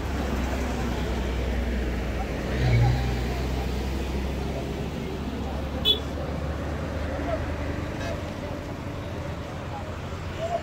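Outdoor street ambience: a low steady rumble of road traffic under indistinct crowd voices, swelling briefly about three seconds in, with one sharp click near six seconds.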